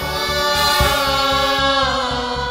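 A male and a female singer singing a Tamil film-song duet together, holding one long, slightly wavering note, backed by a live band with keyboard and drum kit keeping a steady beat.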